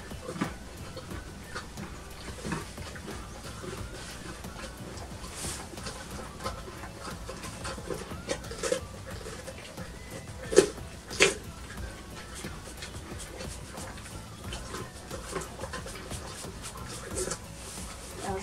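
Mini Shetland pony munching hay amid rustling straw and grooming noises, with two sharp knocks in quick succession a little past ten seconds in.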